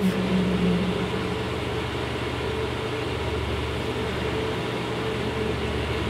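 A steady mechanical hum: a low drone with a couple of constant tones over an even rushing noise, like engines or machinery running.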